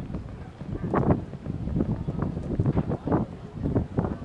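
Wind buffeting the microphone: an uneven low rumble that swells in gusts, loudest about one second and again about three seconds in.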